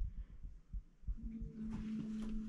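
Faint low thumps, then a steady low hum that starts a little after a second in.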